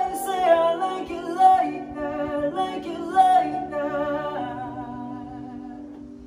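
Live, unplugged pop ballad: voices singing in harmony over sustained electric keyboard chords. The voices stop about four and a half seconds in, and the held chord fades on its own.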